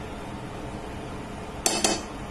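A few quick metallic clinks of a kitchen utensil against cookware near the end, each with a short ring.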